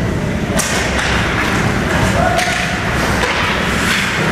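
Ice hockey play in an arena: sharp knocks of sticks and puck on the ice, one about half a second in and another near the middle, over the rink's steady background noise.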